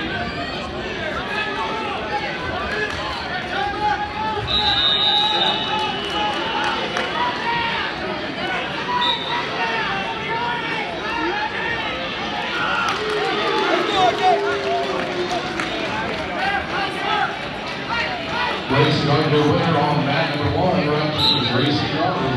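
Gymnasium crowd of spectators talking and calling out, many voices at once, with one man's voice standing out louder near the end.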